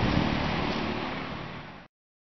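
Outdoor background noise on the camera microphone, a steady hiss with low rumble and no speech. It fades out and cuts off to silence near the end.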